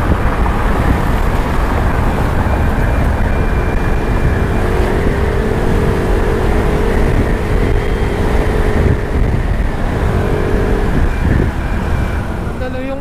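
Riding noise on a moving Yamaha Mio i 125 scooter: a loud, steady rush with the small single-cylinder engine running underneath, and a steady engine hum showing through for a few seconds in the middle, amid city road traffic.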